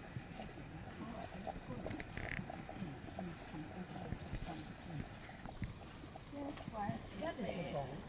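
Indistinct voices talking in the background, with a nearer voice near the end.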